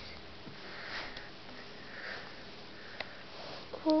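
A few soft, breathy sniffs close to the microphone, with a faint click about three seconds in.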